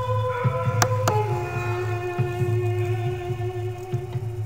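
Background music of held, sustained notes over a low pulsing bass; the chord drops lower about a second in, just after two sharp clicks.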